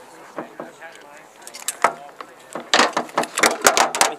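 Pistol cartridges being pressed one by one into a magazine by hand: a lone sharp metallic click, then a quick run of clicks over the last second and a half.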